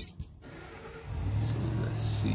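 A knock right at the start, then about a second in a steady low engine hum sets in and holds, like a car running on the street below.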